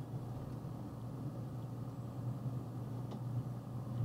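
Box truck driving slowly, a steady low engine and road hum heard inside the cab, with one faint click about three seconds in.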